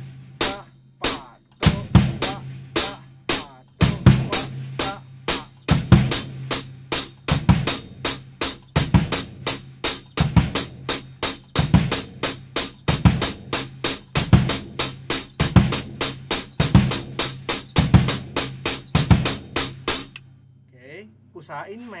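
Acoustic drum kit playing a slow, steady beginner beat: even hi-hat strokes with the bass drum kicked twice on the first count of each bar, the snare left out. The playing stops about 20 seconds in.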